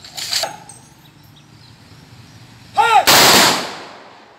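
Police guard of honour firing a ceremonial rifle volley: about three seconds in, a shouted drill command is followed at once by the loud crack of the volley, which fades over about half a second. A shorter, fainter sharp burst comes just after the start.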